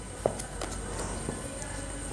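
Faint handling sounds of potting soil being packed into a hanging pot by hand and trowel, with one light tap about a quarter second in.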